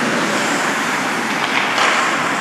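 Indoor ice rink during a hockey game: a steady noisy roar of skates scraping and carving the ice, with a brighter scrape near the end.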